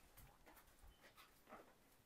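Near silence: faint background with a few soft, scattered ticks and scuffs.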